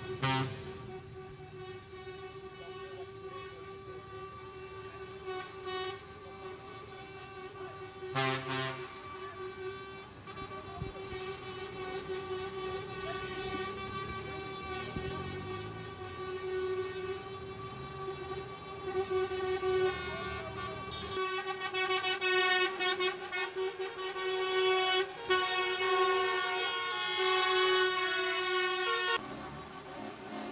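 Truck air horns sounding almost continuously as a convoy of trucks sets off, one held tone with overtones over the running of the engines, with short louder blasts at the start and about eight seconds in.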